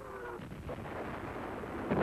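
Artillery shelling: a falling whistle fades out early on over a low rumble, and a loud shell burst or explosion erupts just before the end.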